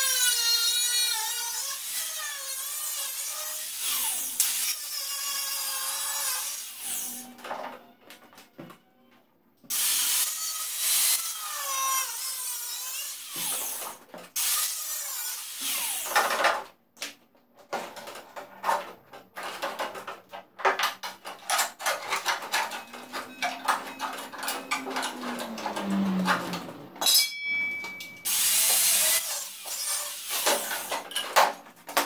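Angle grinder with a cut-off disc cutting through the rusted steel outrigger of an Austin-Healey 3000 frame. It runs in two long cuts, its pitch wavering under load, then in shorter bursts among a run of sharp metal knocks, with the motor winding up and down once, and a last long cut near the end.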